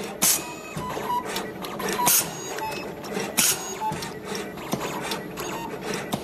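Automatic multi-core cable stripping and cutting machine running, a steady mechanical whirr. Three loud, short hissing bursts come about a second or more apart as it strips the outer jacket and the inner cores of a 5-core cable.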